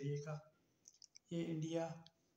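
A man speaking, with a short pause in the middle that holds a few faint clicks.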